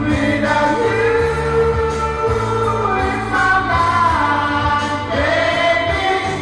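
Karaoke singing: a voice sung into a microphone over a loud backing track with a steady bass line, holding long notes that slide in pitch.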